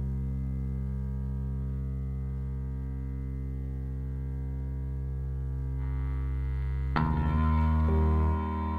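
Live instrumental band music: a sustained low drone of layered, held tones. About seven seconds in, a sudden brighter struck chord comes in over it.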